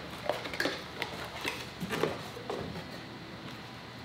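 A few light clicks and taps of small parts boxes and packaging being handled on a table. They die away after about two and a half seconds, leaving quiet room tone.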